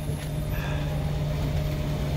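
Steady low hum and rumble of an electric-converted cabin cruiser running underway, heard from inside its cabin.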